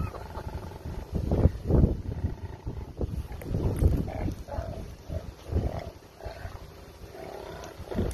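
A koala growling in a string of low bursts, the sound of an angry animal being handled.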